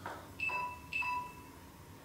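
Two short electronic chime tones, one right after the other, about half a second in.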